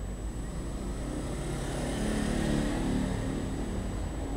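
A motorbike engine passing along the street, growing louder to a peak about two and a half seconds in and then fading, over a steady low traffic rumble.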